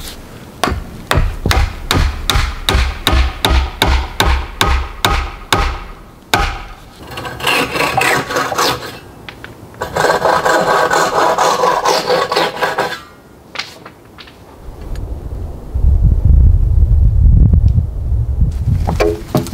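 A wooden mallet driving a wooden peg into a log joint, about three blows a second for the first six seconds. Scraping and rasping on wood follows for several seconds, and a deep rumble fills the last couple of seconds.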